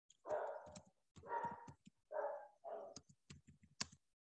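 A dog barking four times, faint, followed by a few quick computer keyboard clicks near the end.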